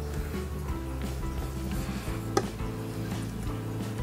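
Quiet background music: sustained notes over a steady bass line, with a single brief click about halfway through.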